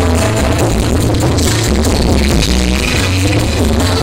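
Live dangdut band playing loudly through a PA system, with a heavy bass line driving a steady pattern.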